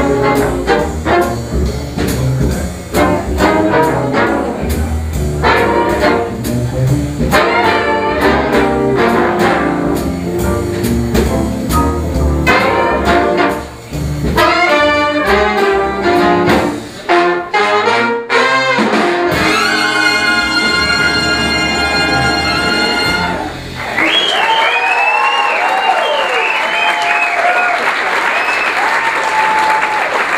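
A live big band of saxophones, trumpets, trombones and rhythm section plays up-tempo swing, closing on a long held final chord that cuts off about 24 s in. Audience applause with cheers and whistles follows.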